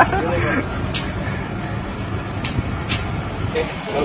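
Street traffic noise: a steady low hum of vehicle engines, broken by three short, sharp hisses.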